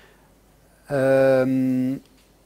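A man's drawn-out hesitation sound, a held "uhhh" at one steady low pitch lasting about a second, starting about a second in and dipping slightly in pitch halfway through.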